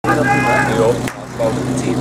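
A portable fire pump's engine idling steadily, with a voice speaking over it in the first second and a sharp click about a second in.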